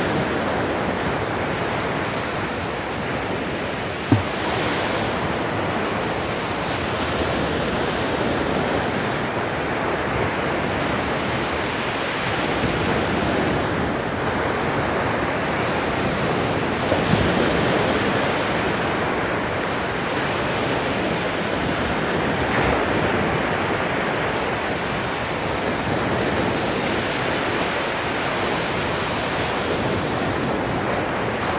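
Sea surf breaking on a sandy beach, a steady rushing that swells and eases. A single sharp knock sounds about four seconds in.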